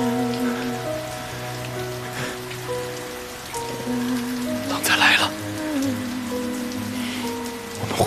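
Steady rain falling, under slow background music with long held notes. A brief loud burst of sound comes about five seconds in.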